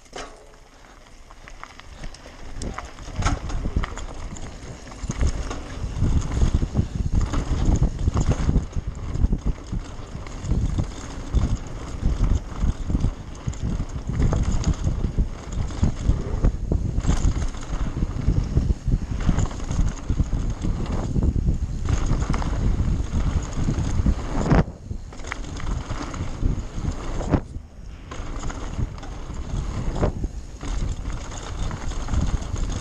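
Mountain bike riding fast down a gravel and dirt trail: wind buffeting the helmet-camera microphone, tyres crunching over loose stones, and the bike rattling and knocking over rough ground. The noise builds over the first few seconds as the bike picks up speed and dips briefly twice near the end.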